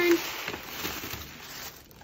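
Tissue paper and a paper gift bag rustling and crinkling as a hand pulls the tissue out of the bag, fading away after about a second and a half.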